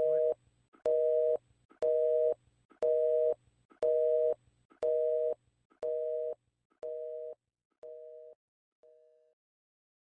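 Telephone busy signal: a two-tone beep repeated about once a second, ten times, fading out over the last four.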